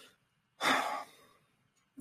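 A man sighs: one audible breath out, about half a second long, starting about half a second in.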